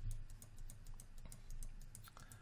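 Rapid light clicking at a computer desk, several clicks a second, from the keyboard and mouse as grass clumps are brushed into a 3D scene.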